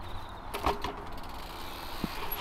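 A few short clicks and knocks from a dirt jump bike being handled and wheeled, bunched together a little over half a second in, over a steady low rumble.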